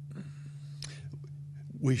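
A pause in a man's speech: faint breathy mouth sounds and a click over a steady low hum, then the first spoken word just before the end.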